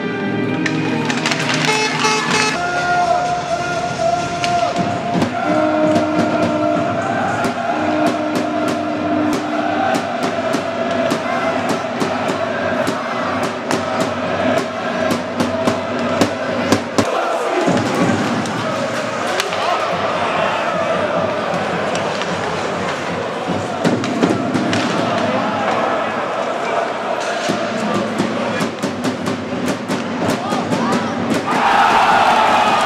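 A piece of music ends about two seconds in. Then comes ice hockey arena sound: a crowd chanting and singing in long held notes, over frequent sharp clacks of sticks and puck on the ice.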